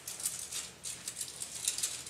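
Thin Bible pages being leafed through by hand close to a microphone: a quick run of short, crisp paper rustles.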